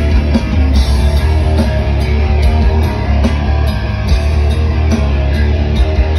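Live rock band playing loud, with electric guitar and drum kit, heard from inside the moshing crowd.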